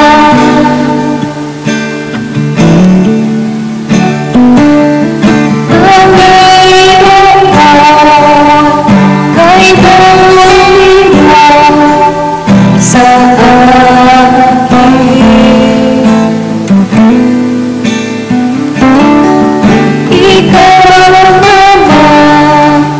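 A woman singing a slow song close into a BM-800 condenser microphone, holding long notes, over an acoustic guitar backing track.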